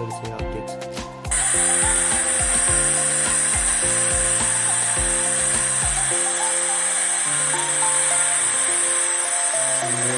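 Loud, steady rush of a waterfall cascading over rock ledges into a pool, cutting in abruptly about a second in, with background music beneath it.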